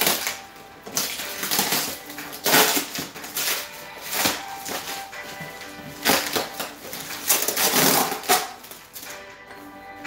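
Bubble wrap and plastic packaging rustling and crinkling in irregular bursts as a small cardboard box is handled and pulled free, with background music underneath.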